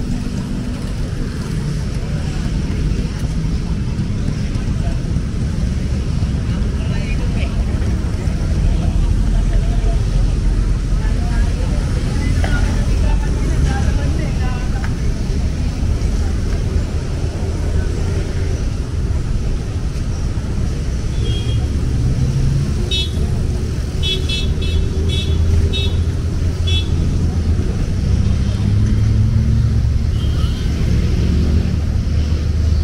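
Steady rumble of city road traffic, with cars and motorcycles passing, throughout. About three-quarters of the way through there is a quick run of short, high-pitched beeps.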